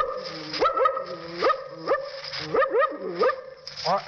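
A man imitating a suspicious dog with his voice: about half a dozen short barks, each rising sharply in pitch.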